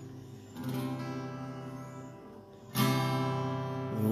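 Acoustic guitar strummed, its chords left to ring and fade: a softer strum about half a second in and a louder one near the end, as the introduction before the singing begins.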